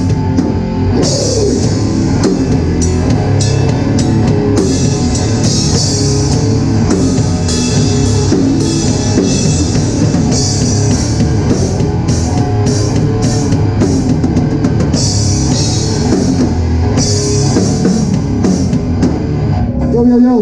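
Hardcore band playing live: distorted electric guitar and drum kit with repeated cymbal crashes, the song stopping suddenly at the very end.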